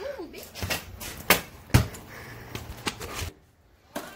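Basketball bouncing on a concrete floor: a few sharp bounces, the two loudest about half a second apart in the middle.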